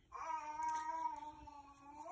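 A cat meowing in one long, drawn-out call that holds its pitch and sags slightly toward the end.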